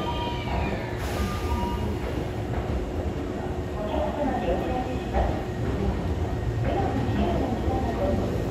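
Hankyu 1000 series electric train pulling slowly into the platform, a steady low rumble of wheels on rail, with a brief whine falling away near the start.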